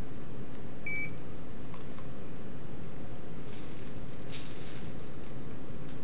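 Ultrasound machine giving one short, high beep about a second in, over steady background noise; a couple of seconds of rustling follow from about three and a half seconds in.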